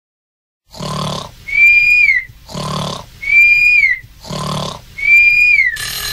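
Comic snoring sound effect: three slow breaths, each a rasping snore on the in-breath and then a high whistle on the out-breath that drops in pitch at its end. Just before the end the song starts with a ringing alarm-clock-like intro.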